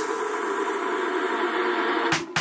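Electronic dance music from a DJ mix in a drumless breakdown: a held, droning chord with no bass, after the ticks that had been coming every half second drop out.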